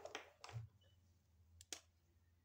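Faint clicks and rustles of a felt-tip marker being handled: two soft sounds in the first half second and a sharper single click near the end.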